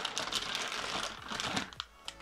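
Clear plastic bag holding a laptop charger crinkling and rustling as it is pulled out of its box and handled. The crackling is dense and continuous and thins out near the end.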